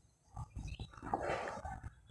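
Marker pen scratching across a whiteboard as letters are written: a run of short, rough strokes.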